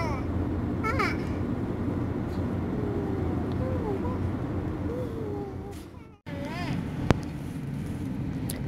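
Steady low rumble of a moving car's cabin, with a small child's voice making soft, scattered vocal sounds. The sound cuts out for a moment about six seconds in, and a single sharp click follows about a second later.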